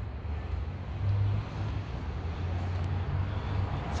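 Steady low background rumble with a faint hiss above it, swelling briefly about a second in.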